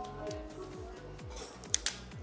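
Background music with a steady beat. Near the end come two sharp cracks in quick succession as a metal cracker breaks the shell of a cooked lobster claw.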